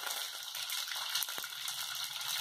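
Hot oil sizzling in a stainless steel pot with mustard seeds and curry leaves just added for tempering, a steady hiss with one sharp pop about one and a half seconds in.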